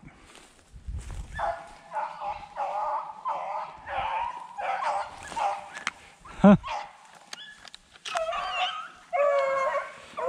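Beagles baying on a rabbit's trail: a run of short, repeated barks through most of the stretch, ending in a longer drawn-out howl near the end.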